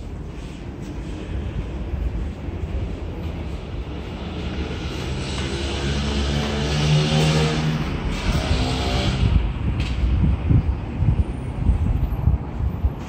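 A motor vehicle driving past, its engine and tyre noise swelling to a peak about seven seconds in, the engine note falling as it goes by. Under it runs a steady low rumble.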